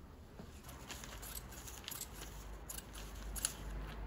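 Scissors cutting West of England cloth, a run of short crisp snips as the covering on a convertible hood bow is trimmed, with one sharper click near the end.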